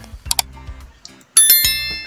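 Subscribe-button animation sound effect: a couple of sharp clicks, then about a second and a half in a sudden loud bell ding, several high tones ringing together, over faint background music.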